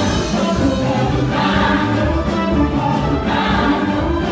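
Live gospel praise music: a group of singers on microphones singing together in Swahili over a band with drum kit and guitar, loud and steady.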